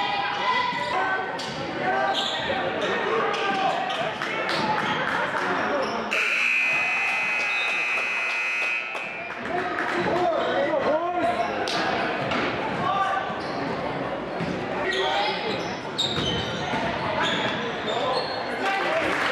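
Gym basketball game: the ball bouncing on the hardwood and voices echoing through the hall. About six seconds in, the scoreboard buzzer sounds once for about three seconds.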